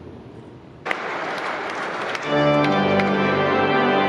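Guests break into applause suddenly about a second in. About a second and a half later the church's pipe organ comes in loudly with sustained chords over the clapping.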